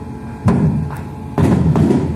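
Shipboard weapon firing at night: two loud blasts about half a second and a second and a half in, each with a rushing tail, and sharper cracks between them.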